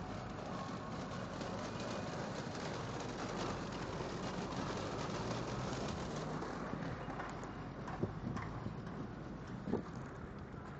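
Steady rumble of wind and road noise while riding a bicycle through a city street. Two sharp knocks come near the end.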